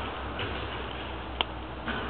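Steady rushing hiss with one sharp click about one and a half seconds in and a softer tap near the end, typical of a handheld camcorder being moved.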